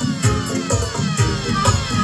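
Roots reggae and dub played on vinyl through a sound system: a heavy bass beat pulsing about twice a second, under repeated falling, siren-like tones.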